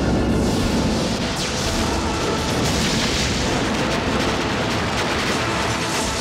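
Film explosion sound effect: a massive blast that starts suddenly and carries on as a dense, steady rumble of fire and debris, with orchestral score underneath.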